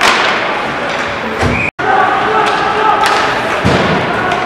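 Ice hockey play along the boards: a sharp bang against the boards right at the start and a heavier low thud near the end, over the noise of the rink.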